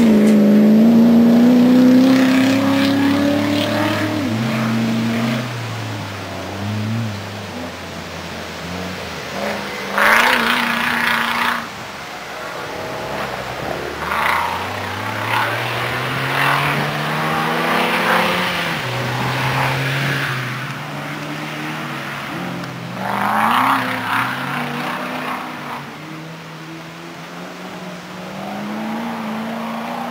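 Land Rover-based comp safari race 4x4 engine revving hard and changing gear on a dirt course, its pitch climbing and dropping again and again. It is loudest at the start, with short bursts of rushing noise about ten seconds in and again about two-thirds of the way through.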